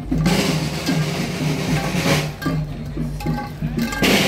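Band music with drums, steady low notes under sharp drum strokes that come about a second in, around two seconds in and at the very end.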